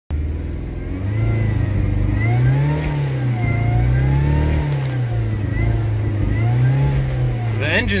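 Car's four-cylinder engine heard from inside the cabin, held above idle with the revs slowly rising and falling several times. At these revs it runs smoothly, which the owner calls healthy.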